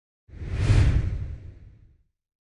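A single whoosh sound effect with a deep low rumble under it, swelling up about a third of a second in, then fading away over the next second and a half: the sting that accompanies a logo animation.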